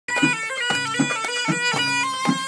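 Bedouin folk music: a reedy, bagpipe-like wind instrument plays a melody in sustained notes, with a hand drum beating along about twice a second.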